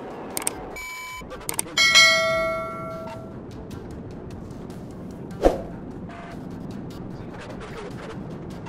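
Subscribe-button animation sound effect: a few mouse clicks and a short ding about a second in, then a loud ringing bell chime that dies away over about a second and a half. A single sharp knock follows later, over a steady low background noise.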